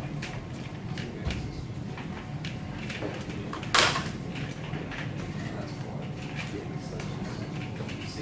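Whiteboard marker strokes and light taps on a whiteboard over a steady room hum, with scattered faint clicks and rustles. One sharp, louder knock or scrape comes just before four seconds in.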